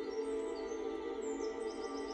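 Soft ambient background music of steady held tones, with faint high bird chirps over it.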